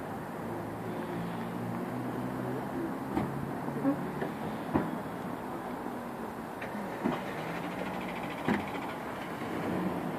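Steady outdoor traffic noise with a low engine hum from cars in a car park, broken by five sharp clicks or knocks in the middle and later part.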